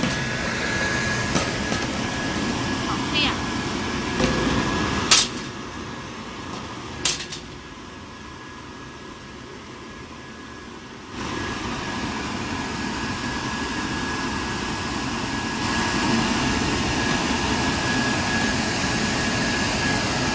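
Automatic garbage-bag-roll shrink-wrapping machine running with a steady mechanical hum and a thin steady high tone, with two sharp clacks about five and seven seconds in.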